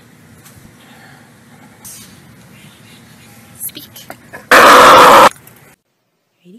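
A seal gives one loud, harsh growl lasting under a second, about four and a half seconds in, over a steady background noise.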